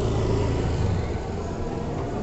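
Steady low rumble and hiss of outdoor urban background noise.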